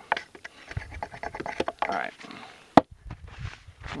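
Light clicks and rustles of a hatchet and a peeled green wooden stick being handled, with one sharp knock a little under three seconds in.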